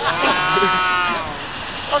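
A single drawn-out, bleat-like vocal sound from a person's voice, held for about a second at a steady, slightly arching pitch, then fading.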